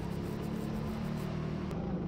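Go-kart running at a steady pace on an indoor track, heard from its onboard camera as an even low hum with faint tyre and wind noise.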